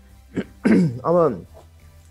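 A man's voice making a brief vocal sound: a short sharp onset about half a second in, then two quick voiced syllables, like a throat clearing or a muttered word. A low steady hum runs under it.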